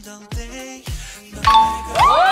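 Background music with a steady drum beat, and a two-tone ding-dong chime sound effect that comes in about one and a half seconds in.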